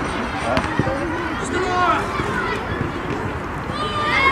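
Young players and coaches shouting and calling across an outdoor football pitch, over steady open-air background noise, with a couple of sharp thuds of the ball being kicked a little over half a second in.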